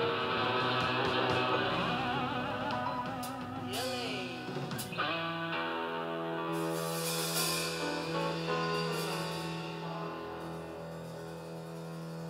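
A live band playing the instrumental introduction to a song, with guitar prominent and sustained notes, including a brief sliding pitch about four seconds in.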